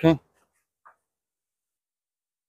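A voice finishing a word, then near silence with one faint, brief sound about a second in.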